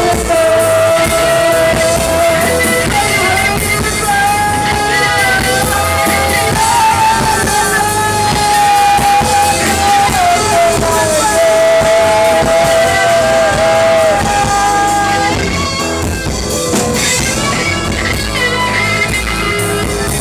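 Live rock band playing: bass guitar and drums with singing, over long held high notes that step between a few pitches. The held notes drop out about three-quarters of the way through, leaving the band more open.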